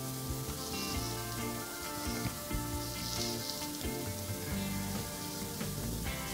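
Quiet instrumental background music, held notes changing about every half second, over a steady hiss.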